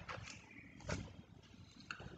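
A quiet room with a few faint, short clicks and knocks, the clearest about a second in.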